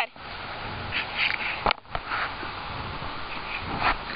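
A dog rolling on its back in grass to scratch an itch: soft rustling with a single sharp click a little before two seconds in.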